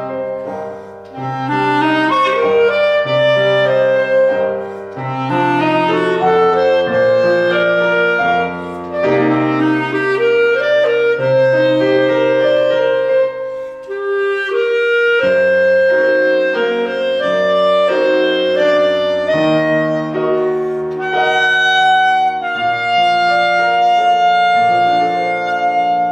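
Clarinet with grand piano accompaniment playing a classical piece, the clarinet carrying the melody over piano chords and bass notes, closing on a long held note.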